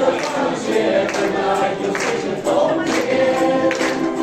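A mixed group of amateur voices singing a song together in chorus, accompanied by ukuleles strumming chords.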